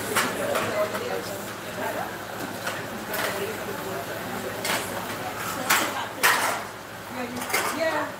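Several people chatting in the background, with scattered clinks and knocks of bowls, pots and utensils being handled on the tables; the sharpest knocks come around six seconds in.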